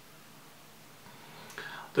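A pause in a man's speech: low room tone, then a short soft breath just before he starts talking again at the very end.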